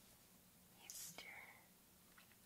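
A brief, very faint whisper about a second in, close to the microphone, over near silence.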